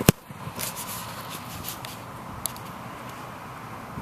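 A football kicked off a tee: one sharp, loud thud of the foot striking the ball right at the start, followed by a few fainter clicks over a steady background hum.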